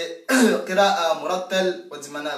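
A man clears his throat about a quarter second in, and his voice runs straight on in long, drawn-out melodic phrases.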